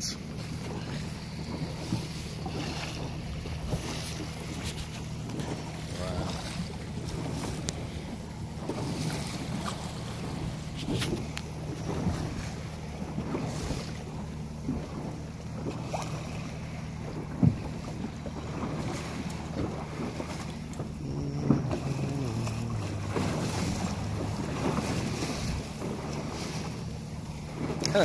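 Yamaha outboard motor on a Boston Whaler running with a steady low hum, under wind on the microphone and the wash of water along the hull. A little past two-thirds of the way through, the motor's note steps down in pitch.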